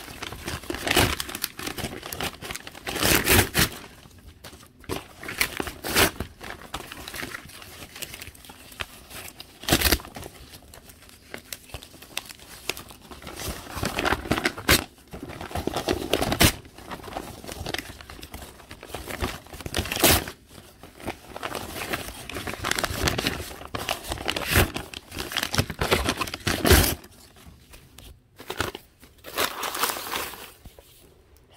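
Paper being torn and crumpled by hand in irregular bursts, with a few sharp, loud rips.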